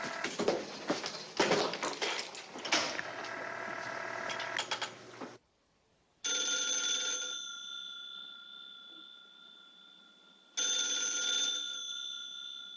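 A rotary desk telephone's bell rings twice, about four seconds apart, each ring lasting about a second and dying away slowly. Before the rings there are about five seconds of other sound and a brief hush.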